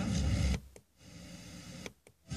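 Car FM radio being stepped across the band: about half a second of a station's audio, then the tuner mutes briefly, then faint static hiss on an empty channel, cut by another short mute as it retunes near the end.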